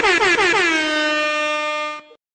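A train air horn blowing one long blast. Its pitch wavers in quick dips at first, then holds a single steady tone.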